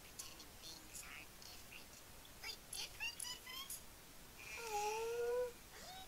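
Faint, quiet voices with soft breathy, whispery sounds, and a held voiced sound lasting about a second near the end, the loudest moment.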